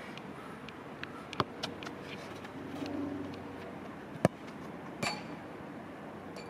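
A bird calling with a low, cooing call about halfway through, over a steady outdoor background. There are two sharp knocks, one a little after a second in and a louder one just after four seconds in.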